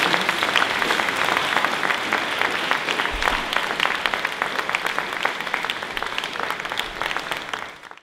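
Congregation applauding: dense hand clapping that slowly fades, then cuts off suddenly at the very end.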